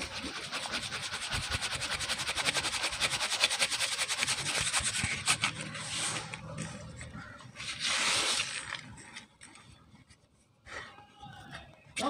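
Dry powdered cement rubbed by hand through a sieve's mesh, a fast, even scratching that runs for about five seconds. Around eight seconds in comes a louder, brief rush as the powder is tipped out. After that there are only quieter scattered rubbing sounds.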